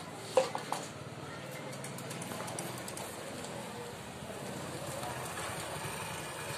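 Faint background voices over a steady outdoor hum, with a brief sharp sound and a couple of smaller clicks in the first second.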